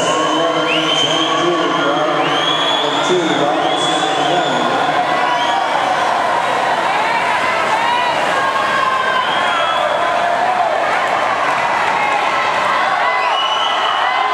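Swim-meet crowd cheering and shouting for swimmers mid-race: many voices at once, with high-pitched yells rising out of the din again and again and no letup.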